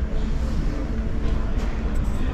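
Steady low rumble of background noise in a large indoor exhibition hall, with no single event standing out.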